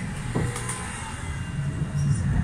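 Inside a moving tram: the steady low rumble of the tram running along the rails, with a short knock about half a second in.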